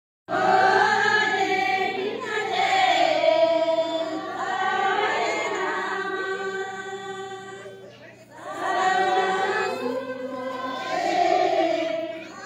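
A group of voices singing a Kinnauri folk song together, unaccompanied, in long held phrases. One phrase fades out about eight seconds in and the next begins straight after.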